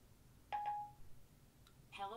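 Siri's chime on an iPhone 5 sounds once, a short clear tone about half a second in, as Siri stops listening to the spoken question. Right at the end Siri's synthetic voice begins its reply.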